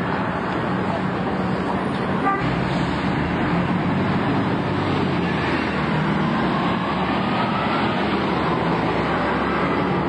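Diesel buses running in street traffic, a steady mix of engine and road noise. There is a brief sharp sound about two seconds in, and a faint rising whine in the middle.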